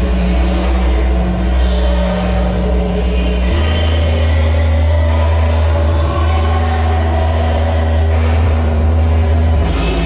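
Harsh noise music: a loud, dense wall of distorted noise over a heavy sustained bass drone, the bass note stepping up in pitch about three and a half seconds in.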